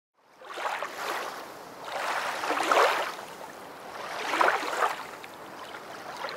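Rushing water like waves washing in: three swells of water noise about two seconds apart, each building and then fading.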